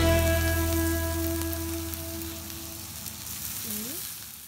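Beef and chicken sizzling and crackling on a tabletop yakiniku grill plate. Over it, the last held chord of background music fades out during the first three seconds, and near the end there is a brief rising pitched sound.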